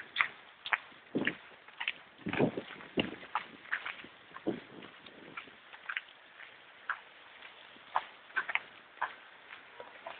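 Footsteps at a walking pace, about two a second, on wet pavement, over the faint steady hiss of hail and rain falling.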